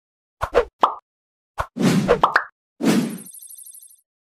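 Animated-logo sound effects: a quick run of short pops and swishes cut against dead silence, the last one trailing off into a fast, fading high-pitched sparkle near the end.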